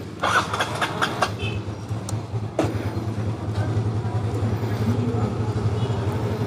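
Motorcycle engine starting with a brief clatter about a quarter second in, then idling steadily.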